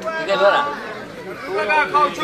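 Men's voices talking and calling out over one another, the chatter of a crowd of spectators around the court.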